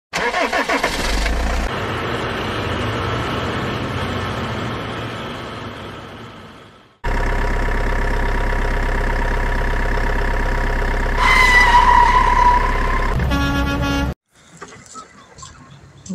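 Truck sound effects: an engine starting and running, fading out over several seconds, then a steady engine running that cuts in suddenly. A horn blast sounds over it about four seconds later. A short second tone follows before the sound stops abruptly.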